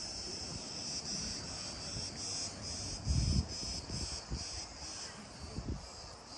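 Cicadas chirring, a steady high buzz pulsing about three times a second. A few low thuds sound over it, the loudest about three seconds in.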